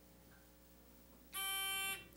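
Quiz-show buzz-in signal: a steady electronic beep lasting about half a second, starting about a second and a third in, as a contestant buzzes in to answer.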